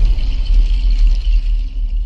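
Cinematic intro sound effect: a loud, deep, steady bass rumble with a fainter hiss layered over it.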